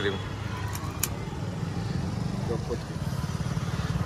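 A small engine running steadily, a low even rumble. A short click comes about a second in.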